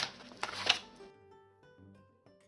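Two sharp knocks in the first second as a bulky handmade album and a piece of cardboard are handled on a cutting mat, followed by quiet background music with short plucked notes.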